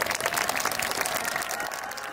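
Outdoor audience applauding at the end of a song, a dense, steady patter of many hands clapping that thins slightly near the end.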